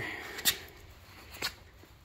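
Two short sharp clicks about a second apart, the first louder, over quiet room tone.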